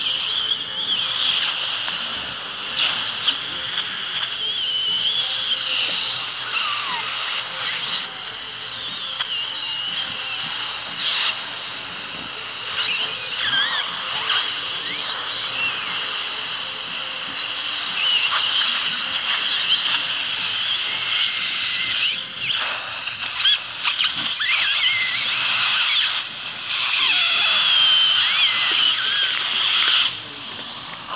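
Dental equipment in the patient's mouth hissing and whining steadily during a tooth extraction, with wavering high squeals. It cuts out briefly about 12, 22 and 26 seconds in.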